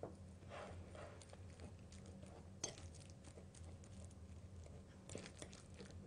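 Faint soft squishing of very ripe bananas being lightly mashed with a fork on a ceramic plate, with a few light clicks of the fork against the plate.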